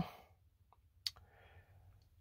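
A pause between words: a single short click about a second in, then a faint breath.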